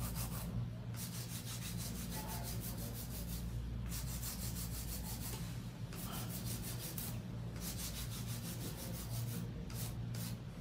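A flat hand file rasping across a long acrylic nail in quick, repeated back-and-forth strokes, smoothing the surface to an even curvature, with a few brief pauses. A steady low hum runs underneath.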